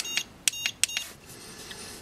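Mini Educator dog-training e-collar giving a few short electronic beeps in the first second, its tone-mode signal. After that there is only faint hiss.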